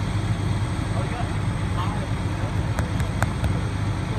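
Fire engine's diesel engine idling, a steady low drone, with a few light clicks about three seconds in.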